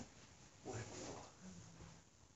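A faint, brief vocal sound, a low murmur followed by a short hum, in a pause between speech.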